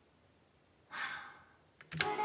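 Near silence, then one breathy human sigh about a second in, fading out over about half a second. Two faint clicks come just before the end.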